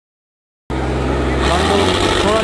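Sonalika 750 tractor's diesel engine running, cutting in abruptly a little under a second in. Crowd voices join over it in the second half. The engine is working hard, blowing black smoke.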